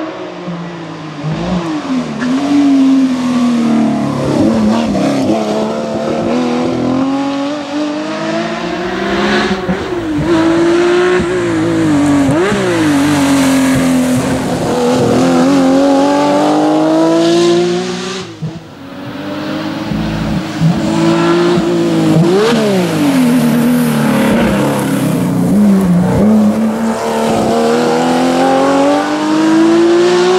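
Porsche 911 SC rally car's air-cooled flat-six engine driven hard, its pitch climbing and then dropping sharply again and again as it accelerates, shifts and slows for bends. Loudness dips briefly about two-thirds of the way through before the engine comes back up.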